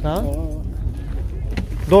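A man's voice speaking briefly at the start and again near the end, over a steady low rumble.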